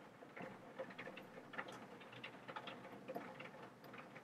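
Near-quiet room noise with faint, irregular small clicks.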